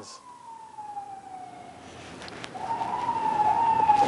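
Emergency vehicle siren wailing in the distance: a single tone slides slowly downward, then rises again after about two and a half seconds and grows louder toward the end.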